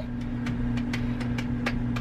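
A steady low electrical hum with a few faint ticks.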